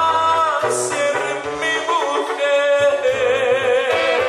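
Live Tierra Caliente band music: a held, wavering melody line with singing over a bass line that changes note about every half second.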